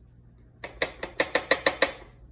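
Salt and pepper being added by hand into a plastic food processor bowl: a quick run of about eight sharp clicks, roughly six a second, starting about half a second in.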